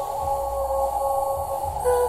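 Music played through a Cerwin Vega XLS15 tower speaker and CLSC12S subwoofer, heard in the room: a held melody note over a steady deep bass, moving to a new note near the end.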